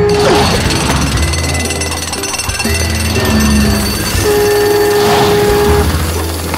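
A loud, rapid mechanical hammering noise, like a jackhammer at work, over cartoon background music.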